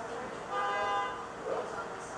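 A single steady, horn-like toot lasting about half a second, starting about half a second in.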